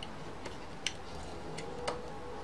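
A few small, sharp clicks, about four, as a thin metal tool taps and catches against the circuit board and plastic case of the opened media player. The clearest click comes a little under a second in, and another comes near the end.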